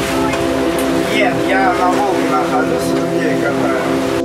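A motorboat under way: engine and rushing wind and water noise, with brief indistinct voices about a second in, over background music with a steady pulsing beat.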